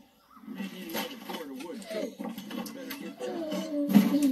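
A piglet's frightened, wordless voiced cries over background music, ending in a sudden thud as the pig faints and drops to the ground.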